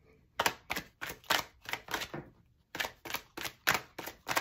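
Tarot deck being shuffled by hand: a quick run of crisp card slaps, about four a second, with a short pause a little past the middle.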